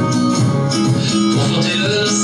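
A man singing a French pop song over a guitar-led backing track.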